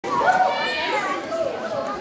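Indistinct chatter of several voices in the audience of a hall.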